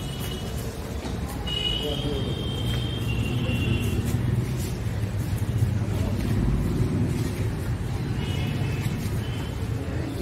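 Indistinct background voices of people in an open hall over a steady low rumble that swells in the middle, with a few high chirps about two seconds in and again near the end.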